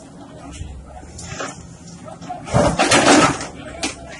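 A Case wheeled excavator's bucket breaking down a concrete-block wall. A loud crash of falling blocks and rubble comes about two and a half seconds in, over the steady low running of the machine.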